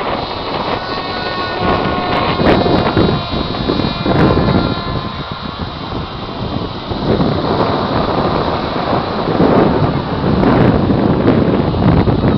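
Wind buffeting the microphone: a loud, rumbling rush that swells and eases in gusts. For the first few seconds a faint steady high whine runs over it.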